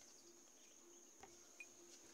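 Near silence: room tone with a faint, steady high-pitched tone and a couple of tiny ticks.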